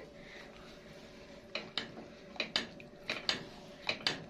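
Metal spoon stirring hot stock in a granite-coated pot, knocking and scraping against the pot about seven times from about one and a half seconds in, over a faint steady hiss of the simmering liquid.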